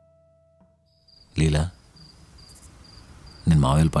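Music fades out, then crickets begin chirping in a steady, evenly pulsed series of high chirps, about two a second. A man's voice speaks two short phrases over them, the second near the end.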